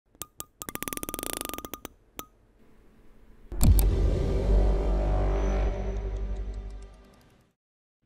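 Animated logo intro sting: a fast run of sharp electronic clicks over the first two seconds, then a sudden deep bass hit about three and a half seconds in that rings on as a sustained musical chord and fades away near the end.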